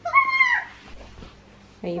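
A toddler's short, high-pitched vocal squeal of about half a second at the start, its pitch dipping at the end.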